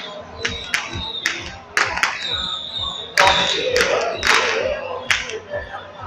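Irregular sharp cracks and crashes, loudest and longest from about three seconds in, over crowd voices and a high held note, in the street noise of a temple palanquin procession.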